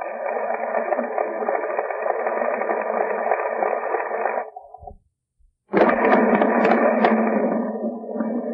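Audience applauding, heard through a muffled, narrow-band old recording. The sound cuts out completely for about half a second a little past the middle, then resumes.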